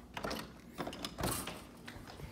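Faint, irregular mechanical clicks and rattles of a door latch and handle being worked.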